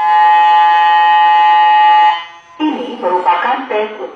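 Electronic alarm buzzer on a student-built tsunami early-warning model sounding one steady, loud tone for about two seconds, then cutting off: the simulated warning signal. Voices follow.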